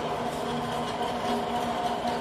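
Centre lathe running idle, its headstock driving the chuck and mild-steel workpiece round before the tool has started cutting: a steady machine hum with a few held tones.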